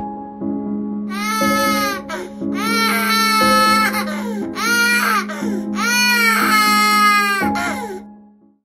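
Human infant crying in four long wails, each falling in pitch at its end, used as the voice of a cartoon baby gorilla. Music holds a steady low note underneath.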